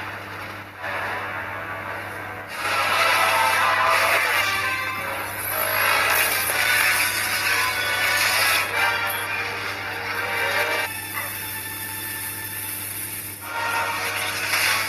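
Soundtrack music from a superhero film clip, changing abruptly several times as the clip cuts.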